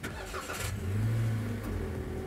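Toyota Rush's 1.5-litre 2NR-VE four-cylinder engine started with the push button: the starter cranks for about half a second, the engine catches, flares up in revs and eases back toward idle.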